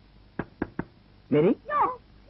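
Three quick knocks on a wooden door, evenly spaced, followed by a voice speaking.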